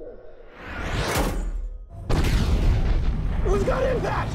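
Film sound design of a laser-guided bomb striking its target: a whoosh rises in pitch about a second in, the sound briefly drops away, then a heavy, deep explosion hits about two seconds in and rumbles on. A voice comes in near the end.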